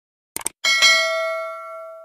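Subscribe-button animation sound effect: a quick double mouse click, then a bright notification-bell chime that rings on and slowly fades.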